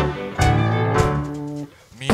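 Live band with electric guitars and violin playing two accented chords about a second apart, each ringing out and dying away, then cutting off short near the end.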